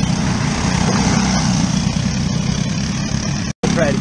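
Racing karts with Briggs & Stratton LO206 single-cylinder four-stroke engines running hard as a pack goes past. The sound cuts out briefly near the end.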